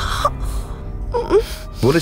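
Background music under a short gasp at the start and a brief vocal exclamation about a second later; a man's speech begins near the end.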